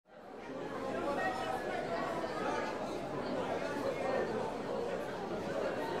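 Babble of many overlapping voices chattering, with no single speaker standing out; it fades in over the first half second and then holds steady.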